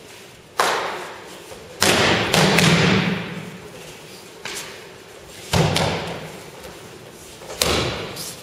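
Bodies slamming onto tatami mats in aikido breakfalls as partners are thrown: about five heavy thuds ringing in the hall, two of them close together near two seconds in.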